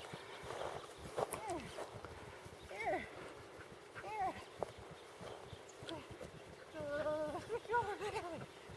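Short, high-pitched vocal calls about a second in, near three seconds and near four seconds, then a longer string of calls near the end.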